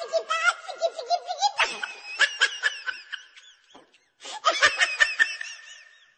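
Laughter in rapid, repeated bursts, breaking off briefly a little before the four-second mark, then resuming and trailing away near the end.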